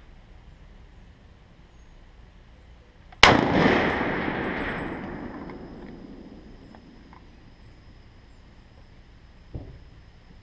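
A single shot from an M1 Garand rifle, very loud and sharp, about three seconds in, its echo dying away over the next few seconds. A much fainter short thump follows near the end.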